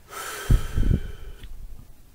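A man's heavy breath close to the microphone, lasting about a second and a half, with the air buffeting the mic in the middle.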